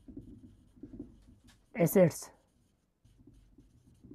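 Marker pen writing on a whiteboard: faint scratching strokes, broken by a pause about a second and a half in and resuming about three seconds in.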